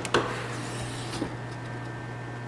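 Light rubbing and a few soft clicks of a handheld camera being moved, over a steady low hum.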